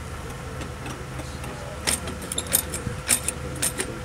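Sharp metallic clicks and clinks in quick succession through the second half, from hardware being worked on a metal burial vault as it is sealed, over a steady low mechanical hum.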